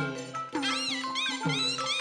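Burmese traditional ensemble music: a reed melody that bends up and down in pitch, over repeated drum strikes.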